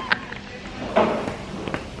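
Hollow plastic ball-pit balls rustling and clicking against one another as a person shifts and sinks into a deep pit of them, with a few sharper clicks near the end, over faint background music.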